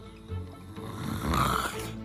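Cartoon snoring: two snores, a short one near the start and a longer one about a second and a half in, over soft background music.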